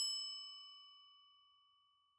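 A single bell-like ding, struck once and ringing out with a few clear tones that fade away within about a second and a half. It is the chime marking the change to the next text of the listening test.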